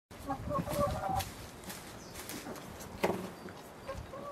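Chickens clucking in a quick run of short notes over the first second or so, with crackling and rustling of leafy branches as a goat tears and chews at them. A sharper crunch comes about three seconds in.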